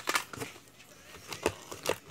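Cosmetics packages and catalogues being handled in a cardboard box: a few short knocks and rustles as items are moved and picked up.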